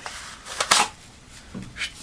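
A machete being drawn out of a hard kydex sheath: short scraping, sliding sounds of the steel blade against the plastic, about half a second in and again about a second later.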